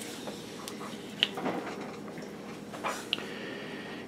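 Spring-loaded solder sucker (desoldering pump) and soldering tools handled over a circuit board while desoldering capacitors: two sharp clicks about two seconds apart among a few softer knocks, over a faint steady hum.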